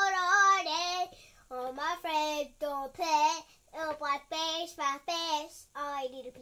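A young child singing a tune: one long held note, then a string of short sung notes.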